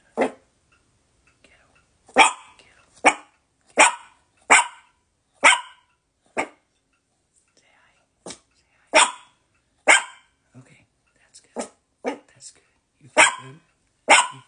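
A small Chihuahua-type dog barking: about fourteen short, sharp barks, some in quick pairs, with short pauses between.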